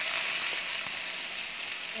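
Shrimp sizzling in a hot frying pan with vinegar just poured over them, a steady hiss that eases off slightly.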